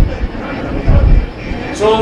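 Low rumbling background noise with a few dull low thumps during a pause in a man's talk; his voice comes back near the end.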